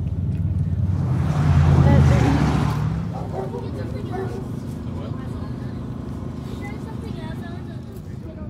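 An engine running with a low steady hum, swelling louder with a rush of noise about two seconds in, then dropping away to a quieter steady hum with faint voices in the background.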